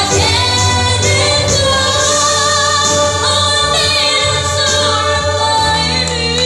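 A young girl singing a ballad solo into a microphone over instrumental accompaniment, amplified through a PA in a hall. Her melody holds and bends over a steady bass line, with no break.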